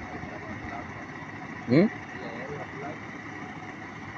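Diesel engine of a stuck tractor-trailer idling, a steady low rumble.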